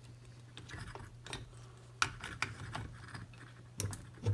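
Faint, scattered clicks and small scrapes of a vacuum tube and plug-in test socket being pushed into a tube socket on a vintage TV chassis, over a steady low hum.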